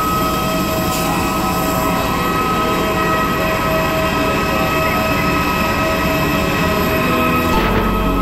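Aircraft turbine running steadily: a loud whine of several held tones over a rough low noise, with a deeper rumble joining near the end.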